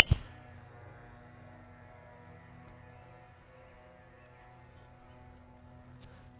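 A sharp crack of a driver striking a golf ball off the tee right at the start, followed by faint steady background music.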